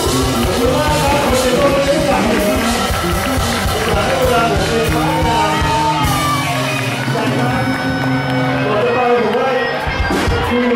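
Live rock band playing: a man singing over acoustic and electric guitars, bass and drums in a large room. The drum strokes thin out about six seconds in while the bass and voice carry on.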